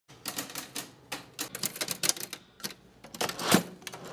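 Manual desktop typewriter being typed on: an uneven run of sharp key strikes, fast in bursts with short gaps, the loudest strike about three and a half seconds in.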